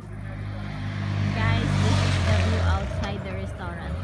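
A road vehicle passing close by, its sound building to a peak about two seconds in and then falling away, with people talking over it.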